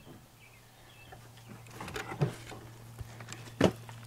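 A plastic-wrapped bundle of split kindling being lifted out of a wooden 2x2 bundler frame: a few faint knocks of wood on wood around halfway, then a sharper knock near the end, over a steady low hum.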